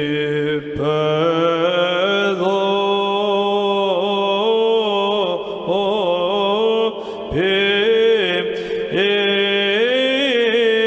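Orthodox church chant: voices singing a slow, melismatic melody over a held drone note, breaking off briefly for breath about a second in and again at about seven seconds.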